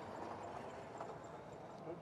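Faint background noise with a soft click about a second in; a man's voice starts at the very end.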